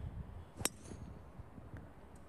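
A golf driver striking the ball off the tee: a single sharp click about two-thirds of a second in.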